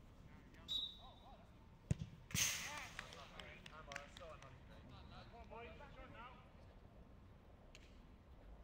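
A short referee's whistle blast, the signal to take the kick, then about a second later the sharp thud of a football being struck. Straight after comes a louder crash of noise and shouting, then scattered players' voices.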